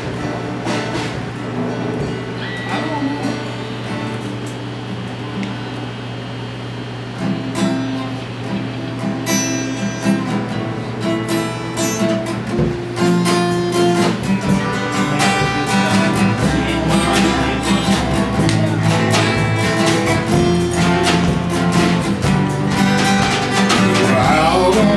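Small live band playing an instrumental intro on acoustic guitar, electric bass and drums. It grows louder and fuller from about halfway through.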